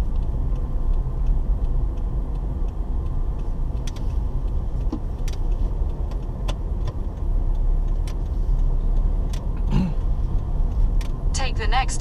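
Car cabin noise while driving: a steady low rumble of engine and tyres, heard from inside the car, with a few faint scattered clicks.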